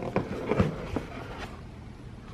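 Cardboard gift box lid being lifted open by hand: a few soft clicks and scrapes of card on card in the first second, then faint handling rustle.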